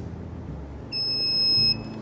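Built-in buzzer of a SUMAKE EAA-CTDS torque display system giving one steady, high-pitched beep of just under a second, about a second in, while the P button is held down. The beep signals that the three-second hold has registered and the unit is leaving setting mode.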